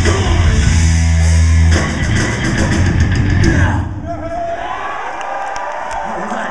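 Crossover thrash metal band playing live at full volume: a held low chord, then drums and cymbals crashing out the end of the song, cutting off about four seconds in. The crowd is left yelling after it.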